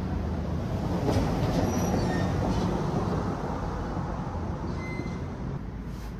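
Street traffic: a vehicle passing close by, its noise swelling about a second in and easing off, over a steady low rumble, with a couple of faint brief squeals.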